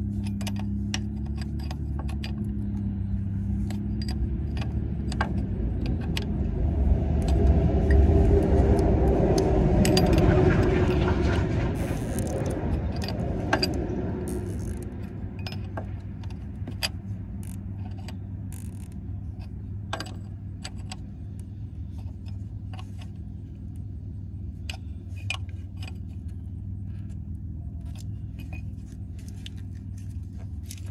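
Open-end wrench clicking and clinking against brass hose fittings as new transmission splitter air lines are tightened, over a steady low hum. A passing vehicle's rumble swells and fades between about six and fourteen seconds in.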